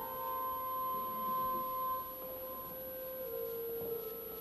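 Soft church organ music: slow, held notes in a flute-like stop. The chord shifts about two seconds in and again a little past three seconds.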